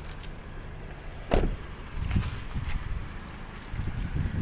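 A car door shut with a single loud thump about a second and a half in, followed by a few softer knocks, over a low steady outdoor rumble.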